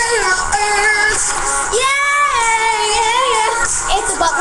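A song with a high-pitched sung vocal that glides up and down in pitch and sounds processed.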